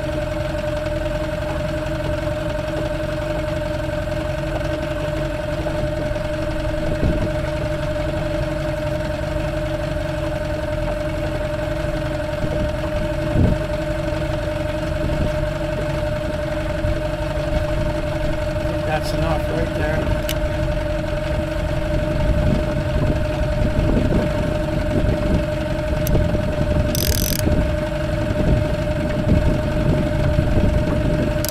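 Mariner outboard motor running steadily at trolling speed, a constant hum with a low rumble. A brief knock comes about midway and a short hiss near the end.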